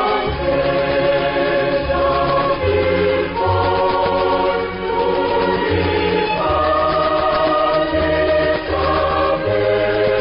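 A choir singing with an orchestral backing: sustained chords over a bass line that moves to a new note every second or so.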